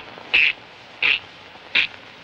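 Three short, hissing clicks made by a man's mouth, evenly spaced about two-thirds of a second apart, a comic's vocal imitation of a ticking in the present he has just handed over.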